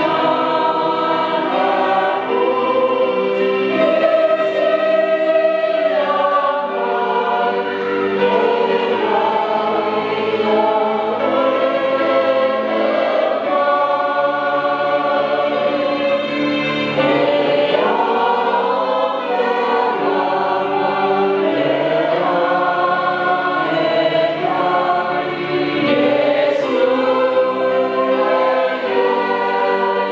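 A congregation of many voices singing a hymn together, in long held notes that change every second or two without a break.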